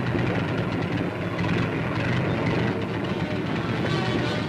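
Boulton Paul Defiant fighters' piston aero engines running on the ground, a steady, noisy drone, heard through an old newsreel soundtrack.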